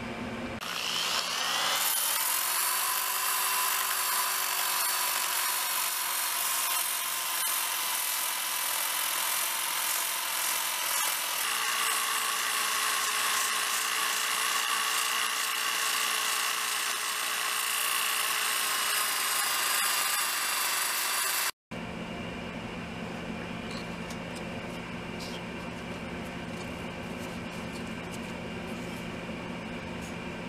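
Power sander with a ceramic sanding disc spinning up about a second in, then running steadily as it grinds the steel hatchet head, its whine stepping up in pitch about halfway through. It cuts off abruptly, and a quieter steady hum follows.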